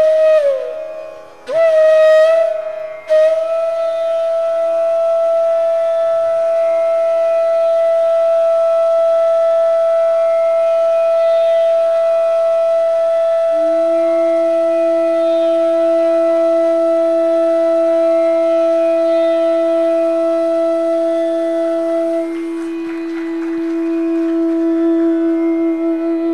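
Two bansuri bamboo flutes playing a Hindustani raga. After a few short gliding phrases, one flute holds a long steady note. About halfway through, a second flute comes in on a lower sustained note beneath it, and the upper note softens near the end.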